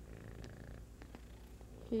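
Domestic cat purring steadily right at the microphone, a low continuous rumble.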